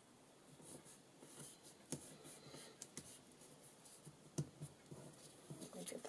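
Faint paper handling: a glue stick rubbed over small pieces of book paper and the pieces pressed down by hand, a quiet scratchy rustle with a couple of sharp little clicks, about two seconds in and again past four seconds.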